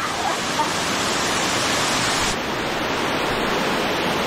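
A waterfall's falling water making a loud, steady, even rush.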